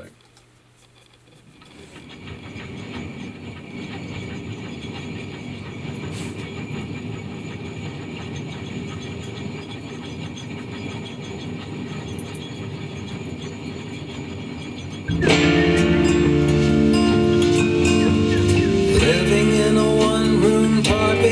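A drum filled with junk (screws, discs) being shaken so the contents rattle and tumble: a steady, train-like rattle that fades in over the first two seconds. About 15 seconds in, the full song comes in much louder over it, with pitched instruments.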